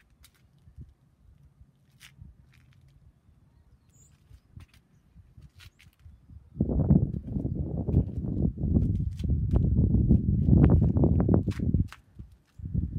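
A quiet open-air background with a few faint clicks. About six and a half seconds in, a loud, gusty low rumble of wind buffeting the phone's microphone starts and runs on unevenly.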